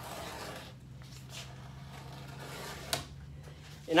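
Faint scratching of a pencil tracing around an old seat template onto a plywood sheet, with a faint steady hum beneath and a single click about three seconds in.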